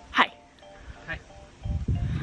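A short, sharp vocal sound just after the start, then faint short musical notes, and a low rumble near the end.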